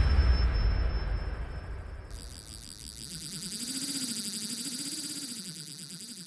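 Logo-intro sound effects: the deep rumble of a boom dies away over the first two seconds, then a bright shimmering hiss comes in about two seconds in, with a low tone wavering up and down beneath it.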